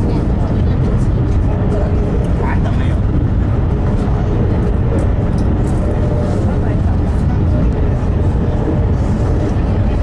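Steady low rumble of a moving passenger train heard from inside the carriage. Indistinct voices murmur beneath it.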